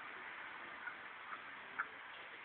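Duck giving three short, faint quacks about half a second apart, the last the loudest, over a steady hiss.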